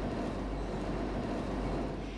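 Textile machinery in a yarn mill running: a steady mechanical noise without distinct strokes, fading near the end.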